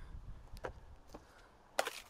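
Quiet handling noise: a low rumble on the clip-on microphone and a few faint taps as the plastic clearer board is moved, then a short breath in near the end.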